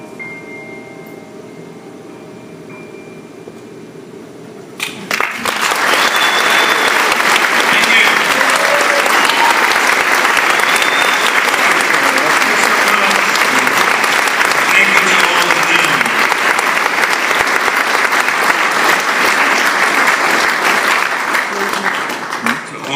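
The last sustained notes of a song fade out. About five seconds in, a concert audience breaks into loud applause that goes on steadily.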